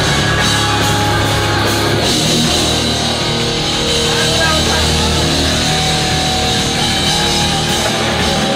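Live heavy rock band playing loud and without a break: distorted electric guitars, bass and drum kit, with a vocalist screaming into the microphone.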